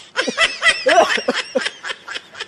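A person laughing in a quick run of short bursts.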